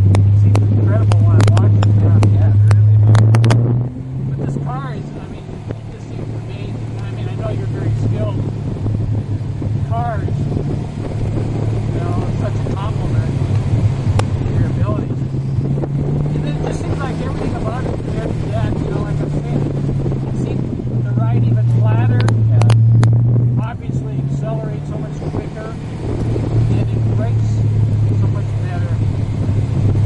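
Honda S2000 engine heard from inside the cabin at track pace, pulling hard at the start. Its note drops away about four seconds in, runs on through the middle, and builds loud again for a couple of seconds before easing off near the end.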